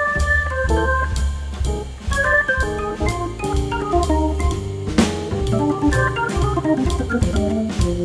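Hammond organ jazz combo playing: quick runs of organ notes over a low bass line, with drums keeping a steady beat on the cymbals.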